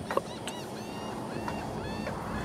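Many short, high bird calls repeating over a steady outdoor hiss.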